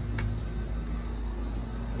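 A steady low machine hum with a faint drone, and a single short click about a quarter second in.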